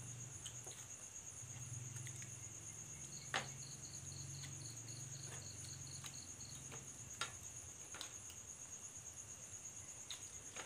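Night insect chorus: a steady high-pitched cricket trill, joined in the middle by a second insect chirping about three times a second. A low steady hum sits underneath, and a few sharp clicks of spoons on bowls come through, the loudest a few seconds in.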